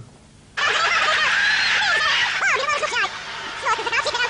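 Videotape being rewound with its sound still playing: high-pitched, warbling, sped-up garble of voices and noise that starts abruptly about half a second in.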